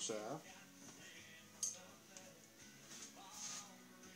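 Quiet hand-handling of a turned wooden spindle whorl and its wooden shaft, with a single light click about a second and a half in. The lathe is stopped.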